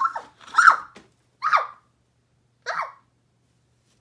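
A girl's short, loud vocal exclamations, four of them, each sliding down in pitch, the last about three seconds in.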